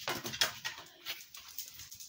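A basset hound carrying a small kettlebell in her mouth across a doorway: a run of light, irregular clicks and knocks from her claws and the kettlebell, most of them in the first half second.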